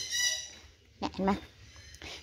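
A woman's voice speaking a short phrase about a second in. Just before it, a brief high-pitched sound fades out over about half a second.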